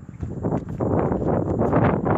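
Wind buffeting a phone's microphone: a loud, uneven rumbling rush that rises and falls.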